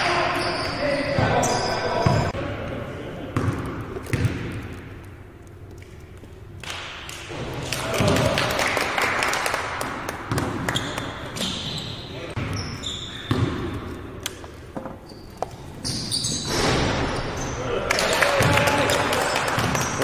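Basketball bouncing on a hardwood gym floor, with players' voices calling out across the court, echoing in a large hall.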